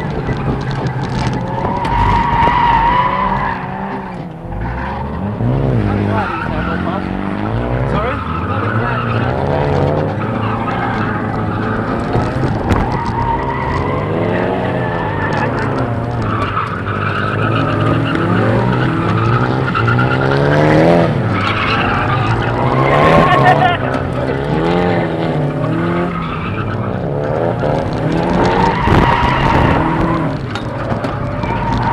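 Car engine revving hard and dropping back again and again, with tyres squealing as the car slides, heard from inside the open cockpit.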